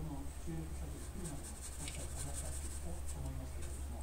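Light scratching and rustling from a cat pawing at a string toy and rubbing it against its bowl: a run of quick scratchy sounds from about a second in, over faint voices and a steady low hum.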